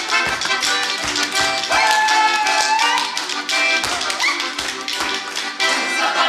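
Lively folk dance tune played live on accordion and balalaika, with a dancer's boots stamping and tapping on the hard floor in irregular strokes over the music.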